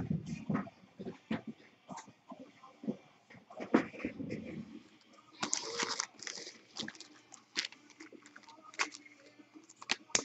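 Foil-wrapped trading card packs being handled and stacked on a wooden table: scattered crinkles, rustles and light taps, with a longer rustle about five and a half seconds in.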